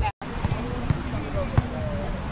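Volleyball being struck by hand: two sharp slaps, about a second in and again just over half a second later, the second louder. Players' and spectators' voices and outdoor noise run underneath. The sound drops out for an instant right at the start.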